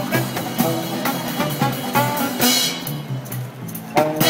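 Street band playing upbeat jazzy music on saxophone, small acoustic guitar, upright double bass and didgeridoo, with a steady beat; the music thins out briefly near the end before the band comes back in strongly.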